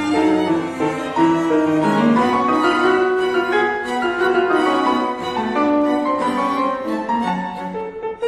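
A piano trio of violin, cello and piano playing a classical chamber-music movement marked Moderato, with the bowed strings holding sustained lines over the piano.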